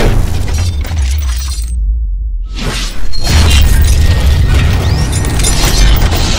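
Cinematic logo-intro sound design: music over a deep bass rumble with whooshes and glass-shatter effects. The upper sound drops away briefly about two seconds in, then comes back with a hard hit about three seconds in.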